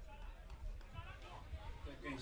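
Faint football-ground ambience: distant voices of players and onlookers calling, over a steady low rumble.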